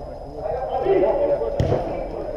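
Indistinct shouting voices of players during a small-sided football game, with one thud of the ball being kicked about one and a half seconds in.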